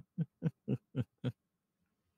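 A man laughing in a villain's character voice: a quick run of short 'ha' pulses, about four a second, that stops a little over a second in.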